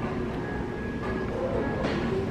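Steady low rumble of indoor store background noise with faint music-like tones, and one short click near the end.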